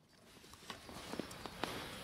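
Faint outdoor background noise with a few light clicks and knocks in the middle, such as handling or steps on soil.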